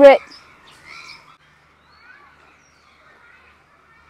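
Faint bird chirps and calls, strongest about a second in.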